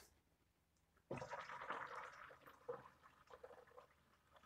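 Liquid pouring from a plastic watering can onto garden soil, starting about a second in and tapering off to a few faint trickles and drips.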